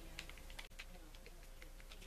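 Faint, scattered light clicks and taps from a Penn 450SSG spinning reel being handled as its handle is screwed back in.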